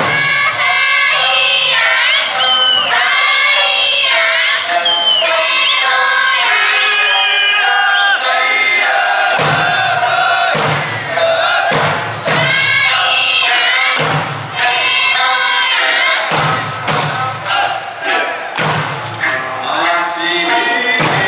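Okinawan eisa music: a folk song sung over the street sound system, with rhythmic group shouts. Drum beats come in from about halfway.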